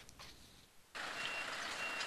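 Flatbed truck with a reversing alarm beeping, two high beeps over engine and street noise that start about a second in.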